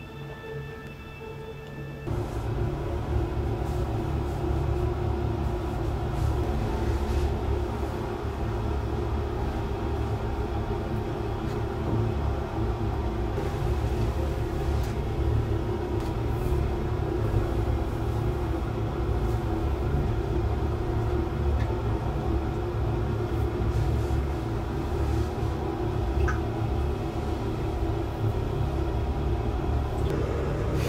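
Music with steady tones for about two seconds, then a steady low rumble that starts abruptly and holds evenly to the end.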